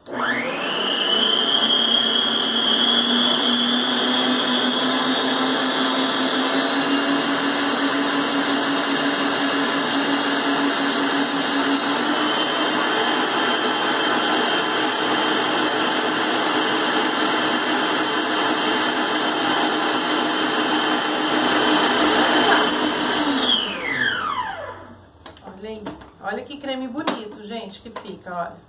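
Electric stand mixer whisking eggs on high speed: the motor spins up with a rising whine, then runs steadily while sugar is added to the foam. Its pitch steps slightly higher about halfway through. About 24 seconds in it is switched off and winds down with a falling whine.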